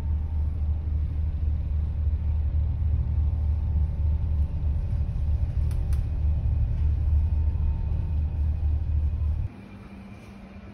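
Steady low rumble of a ferry's engine heard from inside the passenger cabin, with a faint hum over it; it cuts off suddenly near the end.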